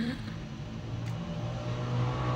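A low, steady motor-like hum that grows a little louder about a second in, with the tail of a short vocal sound at the very start.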